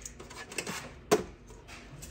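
Handling noise from a plastic Wi-Fi gateway and its cables being turned and lined up by hand: faint rustling, then one sharp plastic click about a second in.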